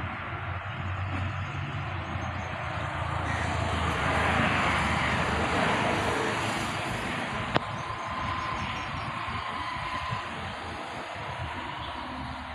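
A passing engine over a steady low hum, swelling for a few seconds about a third of the way in and then fading, with a single sharp click near the middle.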